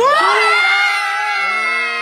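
Young people shouting one long, drawn-out "fartuuura!" together, the held vowel rising at the start and then sustained; a second, lower voice joins about one and a half seconds in.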